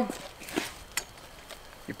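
Quiet handling noise: faint rustles and a few light clicks, the sharpest about a second in, from a hay core probe on a drill being brought up to a round hay bale.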